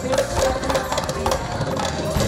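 Live band music: quick percussion strokes over a held note.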